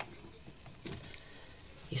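Quiet handling sounds as the lid of a Redmond multicooker is lifted open, with a faint light knock a little under a second in.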